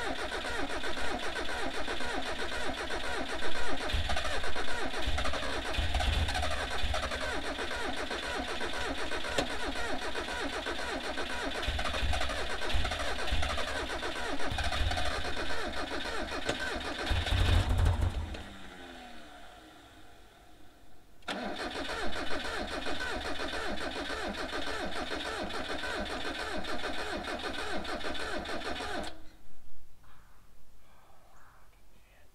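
Mazda Miata kart engine cranking on its starter, sputtering with occasional heavy firing pulses as it tries to catch. It winds down about two-thirds of the way in, then cranks again for several seconds before stopping, without starting. The owner guesses the spark plugs are gas-soaked and fouled.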